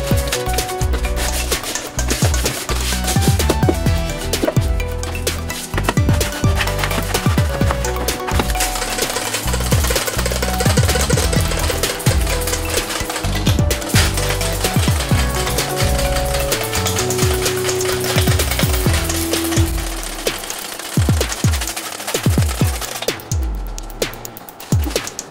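Stiff brush scrubbing grime off engine parts and the underside of the hood in quick, rough strokes during a degreaser wash. Electronic background music with a steady bass plays throughout. The scrubbing thins out near the end.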